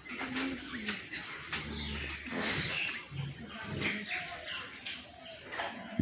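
Birds chirping, with many short high calls scattered throughout.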